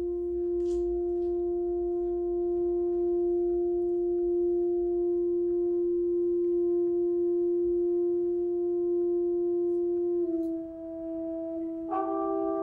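A wind instrument holding one long, soft, steady note for about ten seconds, which steps slightly lower and fades a little near the end.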